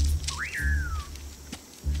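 A single whistle-like call about three-quarters of a second long: it sweeps sharply up, then glides slowly down in pitch, over low steady bass tones.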